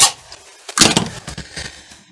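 A sharp click, then about a second of rough clattering from small objects being handled on a workbench.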